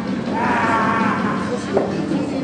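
A person's drawn-out voice over the steady background murmur of a hall, with one sharp click near the end.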